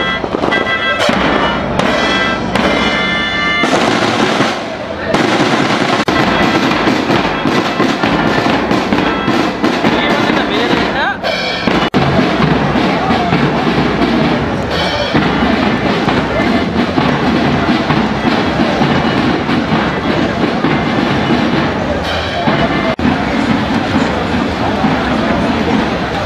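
A school marching band plays drums with melodicas and bell lyres for the first few seconds. The band then gives way to loud, dense crackling over the noise of a large crowd.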